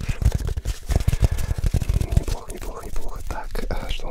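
Close, unintelligible whispering right into a studio microphone, with soft low thumps and rubbing from the mic being touched or breathed on.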